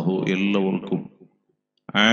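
A man's voice giving a talk in Malayalam, held on a fairly steady, intoning pitch. It stops a little over a second in and the sound drops to dead silence for about half a second, then the voice starts again abruptly at the very end.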